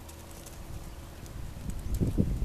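Calves' hooves stepping and trotting on a dirt path, a light scatter of soft clip-clops. A low rumble builds near the end.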